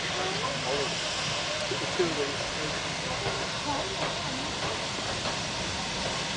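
Steady hiss of steam from a steam locomotive approaching slowly, with people chattering.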